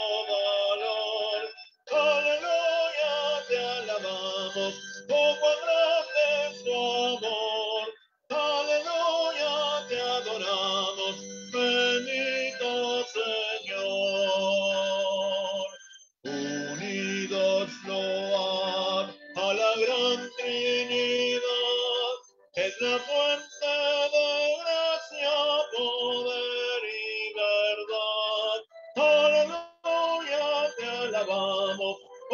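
A hymn sung to musical accompaniment, its sung phrases broken by brief pauses every few seconds.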